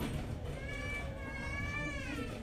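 A long, high-pitched squeak with a steady pitch that drops at the end, typical of a chair leg scraping across a hard floor as chairs are rearranged. Low crowd rumble underneath.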